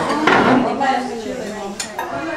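Cutlery and dishes clinking on a dining table, with a louder clatter just after the start and a sharp clink near the end, over people talking.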